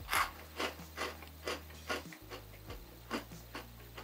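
A crunchy chocolate animal cookie being chewed: a steady run of short, crisp crunches, about two or three a second.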